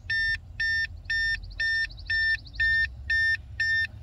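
Simple Key programmer dongle in a 2013 Ram's OBD port beeping over and over, one steady high beep about every half second, with no pause between the groups of beeps.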